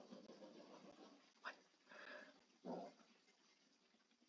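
Near silence: room tone, with a few faint short sounds about a second and a half in and again near three seconds.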